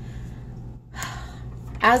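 A woman's quick breath in about halfway through, over a low steady hum.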